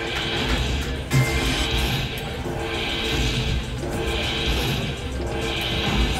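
Dragon Link slot machine's bonus-collection sound: a short electronic jingle repeating about every second and a half as each fireball coin's prize is added to the win meter. There is a sharp hit about a second in.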